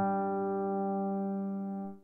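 Solo piano music: a single chord held and slowly fading, cut off sharply near the end.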